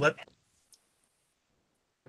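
A single word of speech at the start, then one brief faint click just before a second in, followed by near silence.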